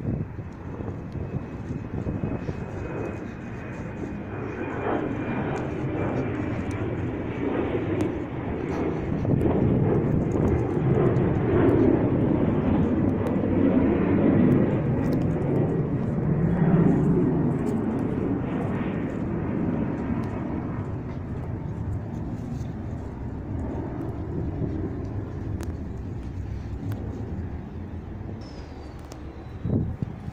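Distant engine noise that swells to a peak around the middle and then fades slowly.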